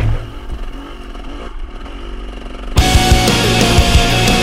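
Loud rock music breaks off, leaving a dirt bike engine running for nearly three seconds. Heavy rock music then starts again abruptly.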